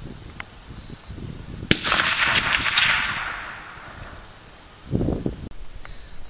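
A single shot from a Winchester Model 94 lever-action rifle in .30-30 about two seconds in, followed by its echo rolling away over about two seconds. A short low rumble comes near the end.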